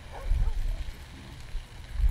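Low rumble of wind gusting on the microphone, surging about a third of a second in and again at the end, with a faint voice in the background.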